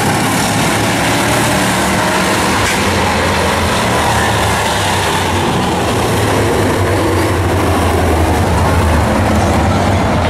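Several Bomber-class stock cars racing on a paved oval, their engines blending into one steady, continuous noise.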